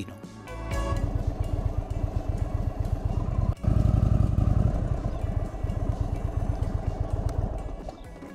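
Indian Super Chief Limited's air-cooled V-twin engine running under way, a dense low pulsing that cuts briefly about three and a half seconds in and comes back louder. Background music plays underneath.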